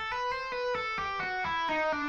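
Electric guitar playing a slow descending legato run in E Aeolian: single notes joined without picking, stepping down in pitch about four a second.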